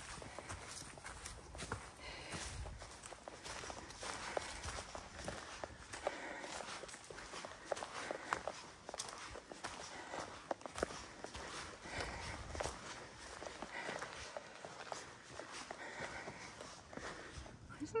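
Hikers' footsteps on a dirt and rock forest trail: irregular scuffing and crunching with scattered sharp clicks.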